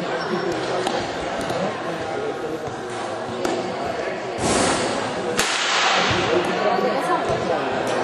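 Spectators chattering beside a futsal game on a hard court in a large roofed hall, with a few sharp thumps of the ball. About halfway through come two loud rushing noises, one after the other, the second dying away over about a second.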